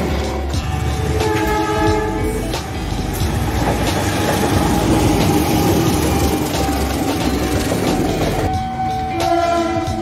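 Passing train rumbling and clattering on the rails, with a diesel locomotive horn sounding a held chord of several tones about a second in and again near the end.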